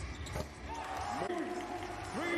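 Basketball game sound from the court: a basketball bouncing amid arena noise, with a voice carrying over it in the middle.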